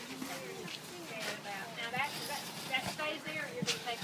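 Indistinct talking voices that no one word can be made out of, with a few short sharp knocks in between.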